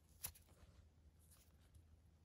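Near silence, with one faint short click about a quarter of a second in.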